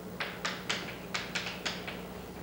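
Chalk striking and writing on a blackboard: a quick series of about eight sharp taps in under two seconds.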